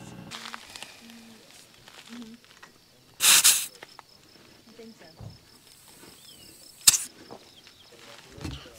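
Air hissing briefly from a van's tyre valve as a pencil-style tyre pressure gauge is pressed onto the valve stem, about three seconds in, followed by a second, shorter burst near the end.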